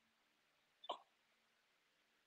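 Near silence, broken once, about a second in, by a single brief vocal sound from a woman, short and falling in pitch, like a quick gasp.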